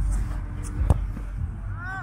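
A place-kicked American football: one sharp thud of the foot striking the ball off the holder's hold about a second in. Near the end comes a short rising-and-falling vocal cry.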